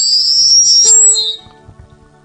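A loud high-pitched whine rises slightly over the first second or so and then stops abruptly. Under it, the sustained notes of the hymn accompaniment go on.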